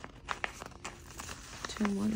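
Paper sticker sheet crinkling as it is handled and bent, with a few sharp crackles. A voice hums or speaks briefly near the end.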